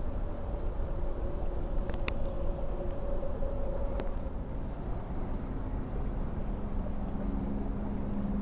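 Steady low rumble and hum of a distant engine, its droning pitch dropping about halfway through, with two light clicks, the second as the plastic spice container is set down on the wooden log about four seconds in.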